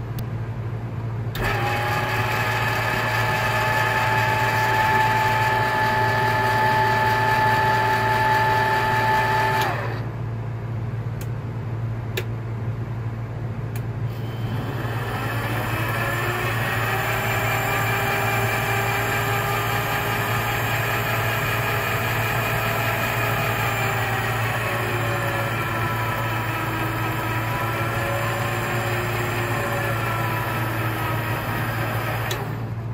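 Mini metal lathe's electric motor running with a steady whine, then stopping about a third of the way in, with a few clicks. It starts again, winding up in pitch, and runs on, its pitch dipping and wavering near the end as the tool bears on the work.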